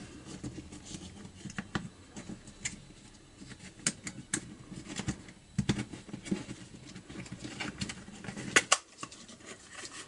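Plastic halves of a string trimmer's throttle control handle being handled and pressed together: scattered light clicks and scraping of hard plastic parts, with two sharp clicks close together about a second and a half before the end.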